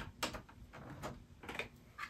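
A few light clicks and knocks as an HDMI cable is fitted into the back of a computer monitor, with the sharpest click at the very start.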